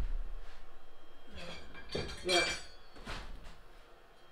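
A few light clinks and knocks of hard objects being handled, a couple around the middle and one near the end, over a low rumble in the first second.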